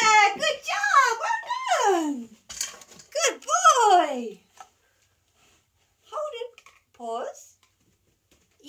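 A high-pitched voice making sliding, sing-song sounds, rising and falling in pitch, packed into the first half and then two short ones near the end.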